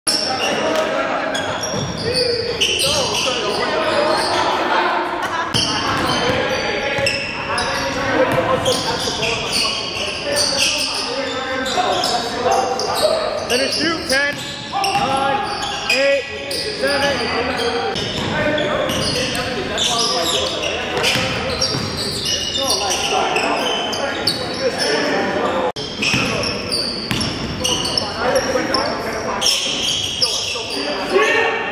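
Basketball game sounds in a gymnasium: a basketball bouncing on the hardwood floor, with players' voices ringing through the large hall.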